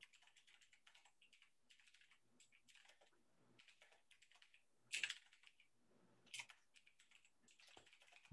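Faint typing on a computer keyboard, a scattered run of light keystrokes, with a louder sound about five seconds in and another about six and a half seconds in.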